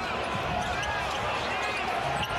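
Arena crowd noise during live play, with a basketball bouncing on the hardwood court.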